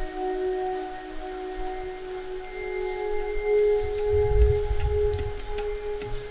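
Background film score of long held, ringing notes, a sustained drone-like pad, with a low rumbling bass swelling in about four seconds in.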